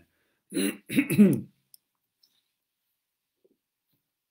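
A man clearing his throat twice in quick succession, about half a second in.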